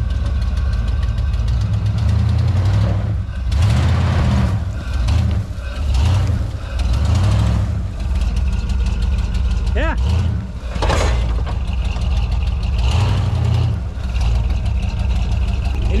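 1980s Ford Bronco engine revving in repeated surges under load as the truck struggles for traction over a rut, tyres scrabbling in loose dirt. Without a locking differential, a wheel loses grip and spins.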